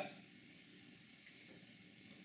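Near silence: room tone between a speaker's sentences.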